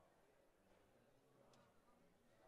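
Near silence: faint room tone with a low hum and a single faint tick about one and a half seconds in.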